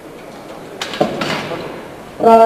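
A sharp knock, then brief loud shouts about a second in, as a woman squats a loaded barbell.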